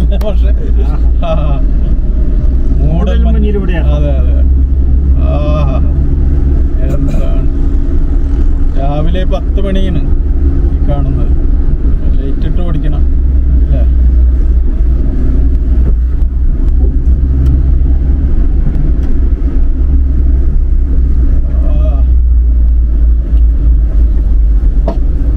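Steady low rumble of a car driving, its engine and tyre noise heard from inside the cabin, with voices talking now and then.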